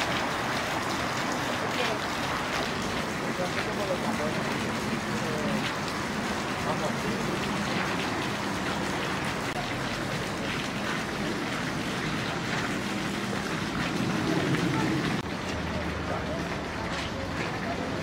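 Indistinct voices of people talking nearby, no clear words, over a steady hissing background noise. The background drops slightly in level about 15 seconds in.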